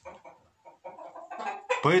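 A flock of black copper Marans chickens clucking in a series of short, broken calls.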